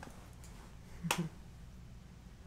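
A single sharp snap about a second in.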